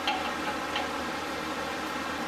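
A few faint ticks of a wrench tightening a tie rod end lock nut, over a steady background hiss.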